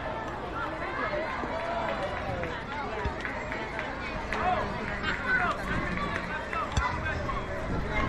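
Several spectators chattering indistinctly, their voices overlapping, with a couple of faint knocks.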